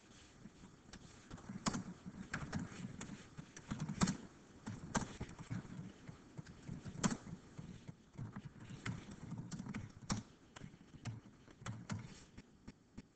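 Typing on a computer keyboard: irregular key clicks, several a second, with a few louder strokes among them.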